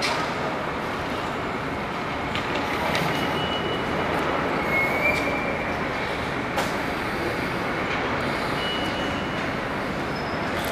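Metro train running on the nearby track: a steady rumble with short, thin wheel squeals about three, five and nine seconds in.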